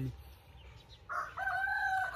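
A rooster crowing: one long, held crow that begins about a second in.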